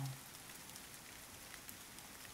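Steady light rain, a faint even hiss of falling drops.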